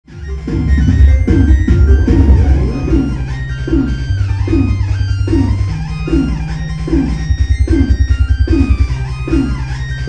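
Live electronic music: deep sustained bass notes changing every second or two under a repeating falling figure about once every 0.7 seconds, fading in over the first second.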